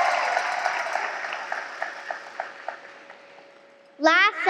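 Audience applause dying away, thinning out to a few scattered single claps before it fades out.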